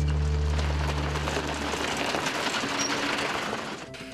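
Background music with held low notes that fade out about a second and a half in, over a steady gravelly hiss of a pickup truck's tyres on a dirt road as it drives up and passes; the hiss drops away near the end.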